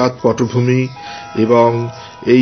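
A man's voice narrating in Bengali over soft background music, with a held steady note coming in about a second in.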